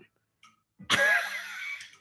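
A man's breathy laugh, one drawn-out burst starting just under a second in, loud at first and fading.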